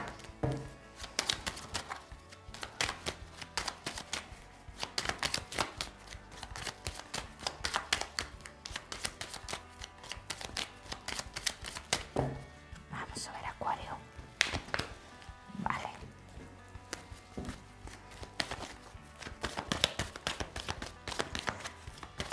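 A deck of tarot cards shuffled by hand, a long stream of quick, irregular clicks and flicks as the cards slide and tap against each other.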